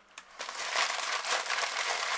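Thin plastic packaging crinkling as it is handled, starting about half a second in and running on as a continuous crackle.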